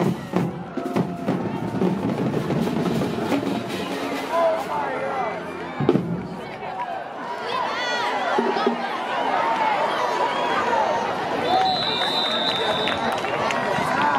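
Music with a drum beat over the chatter of a crowd in the stands, with a sharp knock about six seconds in and a high steady tone lasting a little over a second near the end.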